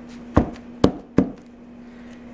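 Three sharp knocks, a little under half a second apart, of hard craft tools set down or tapped on the work table, over a steady low hum.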